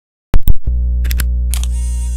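Opening of an electronic dance remix: after a brief silence, two sharp clicks, then a sustained deep bass note holds, with a few light clicks and a hiss coming in about one and a half seconds in.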